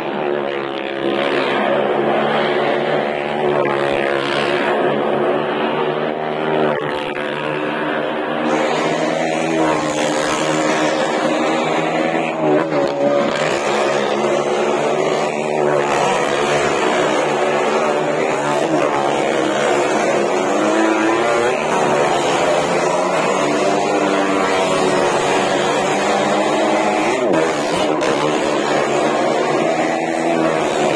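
Several motorcycle and small-car engines running and revving together as they circle the wall of a wooden well-of-death drum. Their pitches overlap and keep rising and falling.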